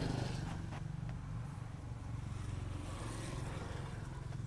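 A small engine running steadily at low speed, giving an even low hum with a fine rapid pulse.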